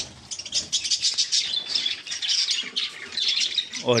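A flock of caged small parrots, budgerigars among them, chattering together in a dense, steady mass of high-pitched chirps and squawks.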